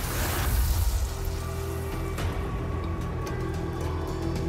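Dark background music over a steady low rumble, with held tones joining about a second in.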